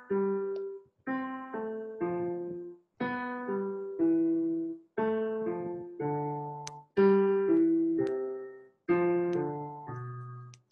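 Roland digital stage piano on its concert grand sound, playing broken-chord arpeggios: a group of three or so decaying notes about once a second, each built on the next note of the A natural minor scale, working back down the scale.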